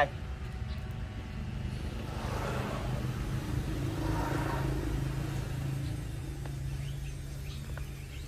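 A vehicle engine running with a steady low hum, growing louder through the middle few seconds and easing off toward the end.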